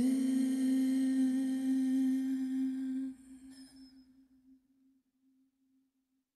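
The last note of a song: a singer's voice holding one steady note on the final word, which thins out about three seconds in and fades away by about five seconds.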